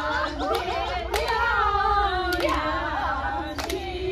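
A group of women singing together unaccompanied, several voices overlapping, with a few scattered hand claps.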